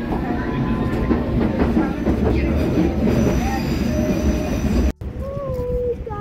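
London Underground train running, heard from inside the carriage: a loud, steady rumble and rattle of the train on the track. The sound cuts off abruptly about five seconds in, and a wavering voice follows.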